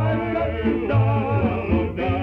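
Tamburica string band (prim, brač, čelo, bugarija and bass) playing a song, with male voices singing in harmony. A new sung phrase starts right at the beginning after a brief dip.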